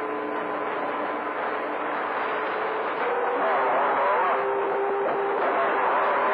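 CB radio receiver on channel 28 hissing with skip static, with several steady whistling tones in the first half. From about three seconds in, a faint wavering voice comes up under the noise.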